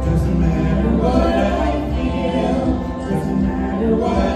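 A vocal trio of two women and a man singing together into handheld microphones, over an instrumental accompaniment with a steady bass.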